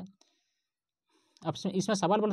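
A voice speaking Hindi in a lecture, trailing off just after the start, pausing for a little over a second of near silence, then speaking again near the end.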